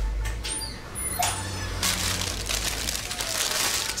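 Plastic crisp packets rustling and crinkling as they are handled, over a low steady hum.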